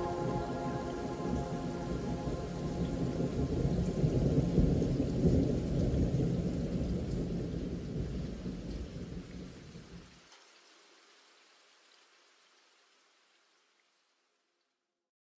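Thunder-and-rain soundscape on the background audio track: a low rumble over steady hiss as the ambient music fades out. It swells about four or five seconds in, then dies away to near silence by about ten seconds.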